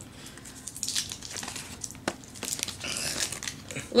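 Wrapper of a small Starburst-type chewy sweet being unwrapped by hand: irregular crinkling crackles with a few sharper clicks.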